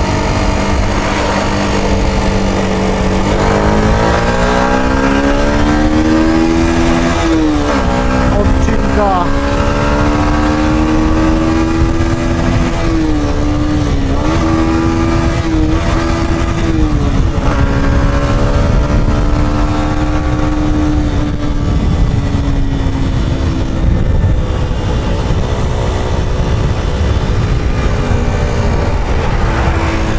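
Yamaha 125 sport bike's single-cylinder four-stroke engine under way. The revs climb, drop sharply at a gear change about seven seconds in, climb again with a few brief throttle dips, then drop again at another shift and hold fairly steady. Wind rushes over the helmet-mounted microphone throughout.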